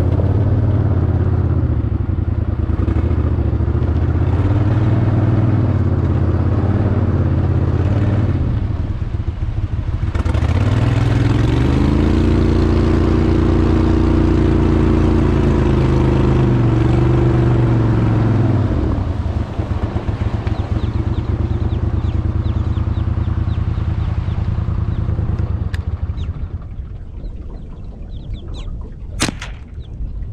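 Jon boat's gas outboard motor running: it eases off briefly about eight seconds in, then revs up with a rising pitch and runs hard under way, drops back to a low idle at about nineteen seconds and quietens further near the end. One sharp click just before the end.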